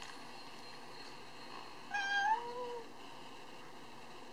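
Plush toy cat's recorded meow: one short meow about two seconds in, under a second long, its pitch held flat and then stepping rather than gliding.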